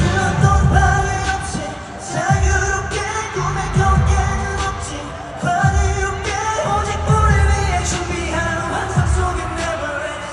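K-pop song played loud over an arena sound system, with a heavy bass beat and singing. It is picked up from the audience by a phone, so it has a boomy, crowded sound.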